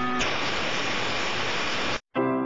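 A steady, even rushing hiss like static, coming in just as sustained string music breaks off and cutting off abruptly at the end.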